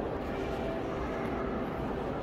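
Steady background noise of a large exhibition hall: an even low rumble with a few faint, indistinct tones over it and no clear voice.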